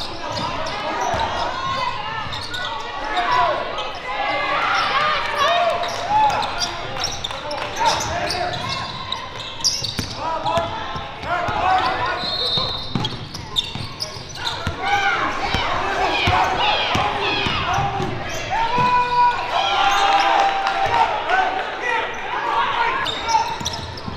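Live game sound of a basketball game in a gym: the ball dribbling and bouncing on the wooden court amid players and spectators shouting, with short knocks and squeaky chirps scattered throughout.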